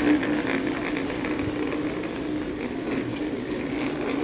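Small plastic chair's legs scraping across a tiled floor as a toddler pushes it along, a continuous grinding drone.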